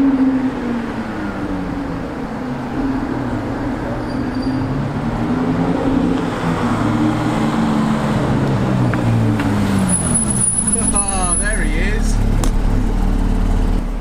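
A Porsche 911 GT3's flat-six and a Lamborghini Aventador's V12 rolling slowly in on light throttle, their engine notes rising and falling in pitch. Near the end a low steady hum and a voice take over.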